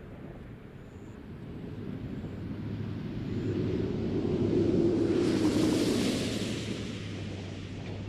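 Space shuttle orbiter gliding in unpowered just above the runway before touchdown: a rushing air noise that swells over a few seconds, is loudest about five to six seconds in, then eases slightly, over a steady low hum.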